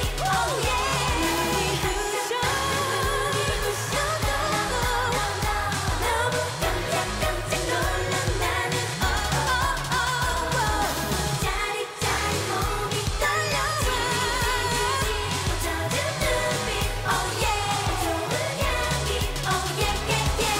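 K-pop song with female group vocals over a pop backing track and a steady beat, performed live in an arena, with a brief break in the beat about twelve seconds in.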